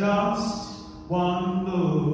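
Gospel choir singing two held phrases, the second coming in about a second in.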